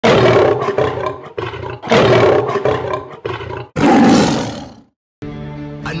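A series of about seven loud roars in quick succession, the last one the longest. After a brief silence, music with a held chord begins near the end.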